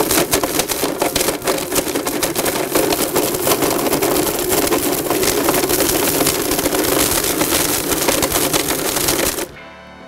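Blendtec Total Blender motor running at high speed, grinding hard plastic, discs and paper in the WildSide jar, with a steady rattle of many small clicks as fragments hit the jar walls. The motor cuts off suddenly about nine and a half seconds in.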